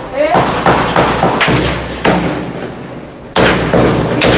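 Gunshots in a recording of a street shootout: about five sharp reports at uneven gaps, each trailing off, the loudest a little after three seconds in. A voice is heard faintly under them.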